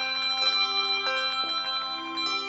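Handbell ensemble playing a fanfare: several bells ring together, their tones sustaining and overlapping, with new notes struck every half second or so.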